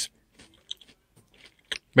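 A few faint, scattered crunches and clicks as fingers pick at a crunchy peanut butter granola topping in a plastic cup.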